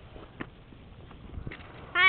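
Faint wind and handling rumble with a couple of soft clicks. Near the end comes a short, loud, high-pitched voice call that falls in pitch.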